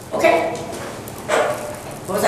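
Two short, loud vocal calls about a second apart.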